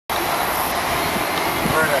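Steady loud outdoor background noise, an even rushing hiss across all pitches, with a man's voice starting near the end.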